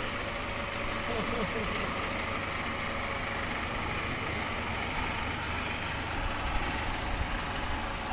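Steady hum of the suspended platform's electric traction hoist motors running, an even mechanical drone with no starts or stops, with faint voices in the first second or two.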